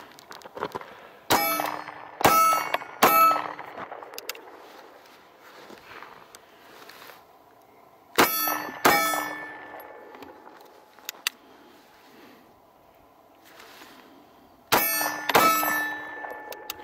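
Sig Sauer P6 (P225) 9mm pistol firing seven shots in three strings: three about a second apart, then two about a second into the middle, then two near the end. Each shot is followed by a short metallic ring.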